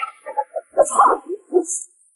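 A quick run of short, yelping animal-like cries, with two brief high swishes among them.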